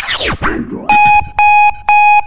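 Electronic music ends in quick sweeping pitch glides, then, about a second in, three identical electronic beeps sound evenly about half a second apart, like a countdown or alarm tone.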